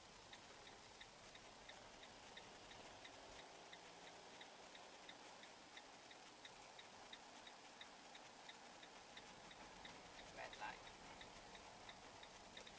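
Faint, regular ticking of a vehicle's turn-signal indicator, about three ticks a second, as the vehicle negotiates a roundabout. A brief, slightly louder sound comes near the end.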